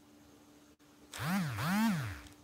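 A man's voice makes a wordless two-note sound about a second in, each note rising and then falling in pitch, with some breath in it. Before it there is a pause with only a faint steady electrical hum.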